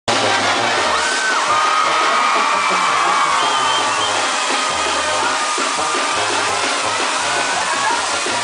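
Mexican banda brass band playing live and loud, trumpets holding melody lines over a stepping low bass line, with crowd noise mixed in.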